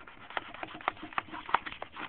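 A quick, irregular run of clicks and scrapes as the double-bladed knife of a Panhandler fish-filleting device is forced through a bluegill clamped inside it, cutting the two fillets away from the bone.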